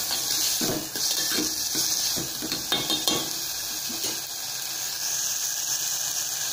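Chopped tomatoes, onion and green chillies sizzling as they fry in oil in an aluminium pot, with a metal spoon stirring and scraping against the pot through roughly the first half. After that, only the steady sizzle.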